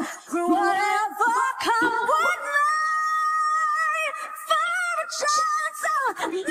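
Female lead vocal, isolated from its backing band, singing a ballad line with vibrato and a long held high note in the middle. The reviewer suspects that long notes like this one have been pitch-corrected.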